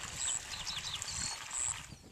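Outdoor field ambience: wind buffeting the microphone with a low rumble, and a few faint, short, high chirps in the first second or so.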